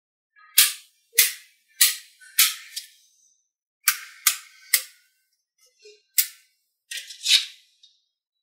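Blocks of small magnetic metal balls snapping and clacking together on a tabletop as they are pushed into place: about ten sharp clicks at irregular intervals, some in quick pairs.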